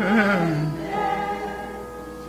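A choir singing long held notes, the pitch wavering briefly about a quarter second in; the voices fade near the end.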